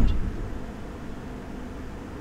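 Electric fan running close to the microphone: a steady whooshing rush with a low hum, dropping in level over the first half second as the fan is moved.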